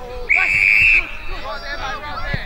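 Australian rules football field umpire's whistle: one steady, high blast of under a second, paying a mark, with players' shouts around it.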